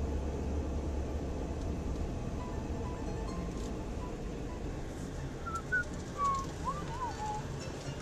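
Car driving slowly, heard from inside the cabin: a steady low engine and road rumble that eases slightly after the first second. A few faint short whistle-like notes come in over it near the middle and toward the end.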